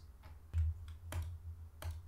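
About three short, sharp clicks of a computer mouse and keyboard over a low steady hum.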